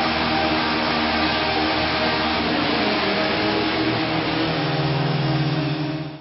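Live hard-rock band ringing out its ending: distorted electric guitars hold notes over a steady, loud noisy wash, and a new lower held note comes in about four and a half seconds in.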